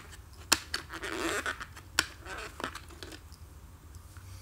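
Handling of a plastic compact cassette: sharp clicks about half a second and two seconds in, with soft rubbing between them, as the tape reels are turned by hand to check that the tape moves freely after the pressure pad is replaced.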